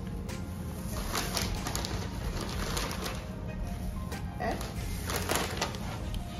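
Background music with a steady low bed, over which a plastic snack bag crinkles in short irregular bursts as pita chips are taken out and set down by a gloved hand.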